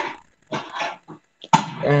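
A dog barking two or three times in quick succession, picked up by a participant's open microphone on a video call.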